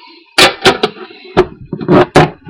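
Handling noise: about five sharp knocks and clicks as the collector's tin and its contents are handled, the loudest about half a second in and at the end.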